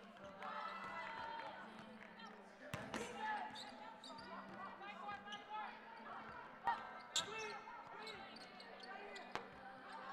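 Basketballs bouncing on a hardwood court during warmups, with a few sharp bounces standing out, the loudest two close together about seven seconds in, among echoing players' voices in a large gym.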